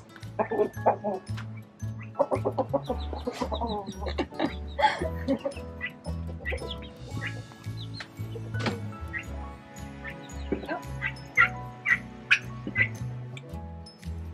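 Chickens clucking and calling in short, scattered bursts over background music with a steady beat.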